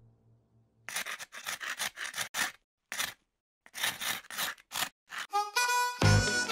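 A sound effect of about a dozen short, uneven scraping strokes, like frost being scraped off a glass pane, starting about a second in. Just before the end, pitched music notes come in.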